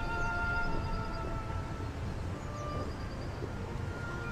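Soft background score with long held string notes that fade over the first couple of seconds, with a short held note near the end, over a steady low rumble.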